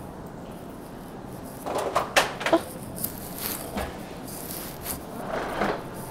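Knocks and rattles of a plastic shopping cart being handled and pushed off. A cluster of sharp knocks about two seconds in is the loudest part, and a few lighter knocks follow.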